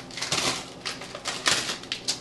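Rummaging through a refrigerator: packages and containers being moved about, with irregular clacks and rustles.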